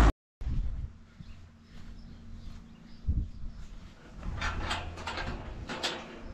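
Penned heifers in a straw-bedded barn calling out a few short times in the second half of the clip, over a low rumble.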